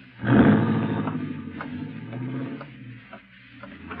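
Radio-drama sound effect of a car engine pulling away and fading out. Then evenly spaced footsteps begin about a second and a half in.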